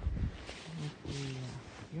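A woman's low, drawn-out, strained-sounding vocal sounds, a long 'okay', over the crunch and rustle of deep fresh snow as she moves through it.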